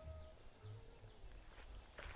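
Near silence: faint outdoor ambience with a low hum and a few faint thin tones.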